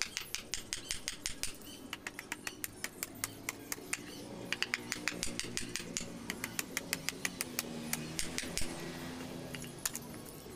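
Machete blade cutting and shaving a small wooden block into a knife handle: a fast run of light, sharp ticks, several a second, with short pauses.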